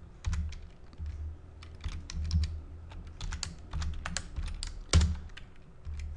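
Computer keyboard being typed on: a quick, irregular run of key clicks as a formula is entered, with one louder key press about five seconds in.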